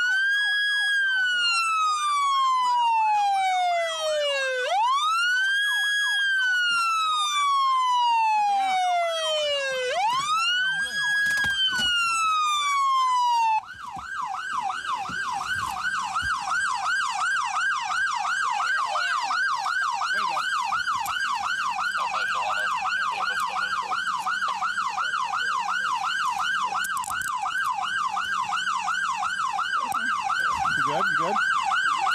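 Police car siren in a slow wail, each cycle rising quickly and falling over about five seconds, then switching abruptly to a fast yelp about three cycles a second, roughly 13 seconds in, during a vehicle pursuit.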